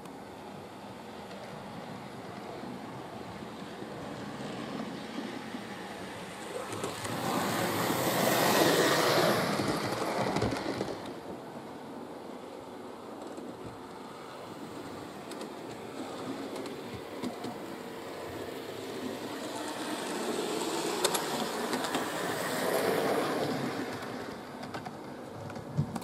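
Hornby OO gauge model Duchess class steam locomotive running round a layout: a steady rumble of wheels on rail and motor that swells twice as it passes close, once about a third of the way in and again near the end.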